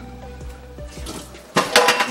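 Background music, then about one and a half seconds in, water from a kitchen tap starts running loudly over a fish held in a stainless-steel sink.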